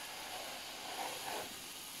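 Garden hose spray gun spraying water onto a car's roof: a steady hiss.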